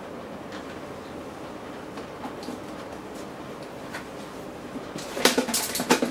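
Steady background hum with a few faint ticks, then about five seconds in a burst of loud clattering knocks as the amp meter box is handled and nearly dropped.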